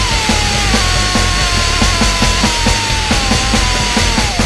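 Powerviolence band playing: a dense wall of distorted guitar and bass over drums hitting about four to five times a second, with a high sustained tone that wavers slowly above it.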